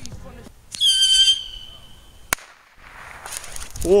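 A whistling firework: a loud, high whistle starts about a second in, dips slightly in pitch, then holds and fades. A single sharp bang follows, then a soft hiss.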